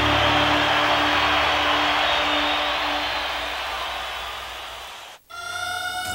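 Background music with a dense, noisy wash fades out over about five seconds. After a brief silence, a new piece of music begins with held tones.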